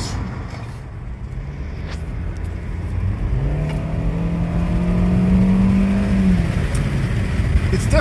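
Kia Soul's 2.0-litre four-cylinder engine under hard acceleration, heard from inside the cabin over road rumble. The engine drone swells and climbs slightly in pitch from about three seconds in, then drops away about three seconds later.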